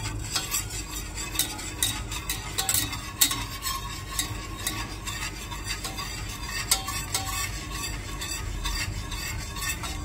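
Wire whisk stirring cacao into hot oat milk in a stainless steel saucepan, its wires scraping and ticking against the metal pan in quick, irregular clicks.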